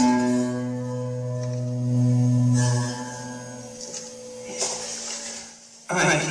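Electric guitar played through a small Roland Micro Cube amp: strummed chords and a few picked notes ringing out and slowly fading. The sound cuts off sharply near the end.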